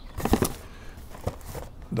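Cardboard boxes being handled: a cluster of rustles and knocks in the first half second, then a few faint taps.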